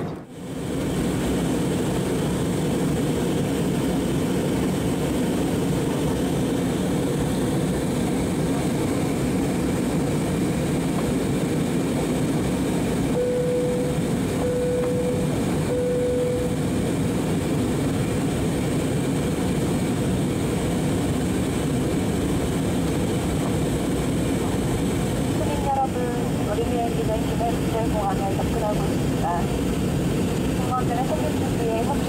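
Steady cabin noise of a jet airliner in flight, the engine and airflow noise heard from inside the cabin. About 13 to 16 seconds in, three short beeps of the same pitch sound over it, and near the end a voice comes in faintly over the noise.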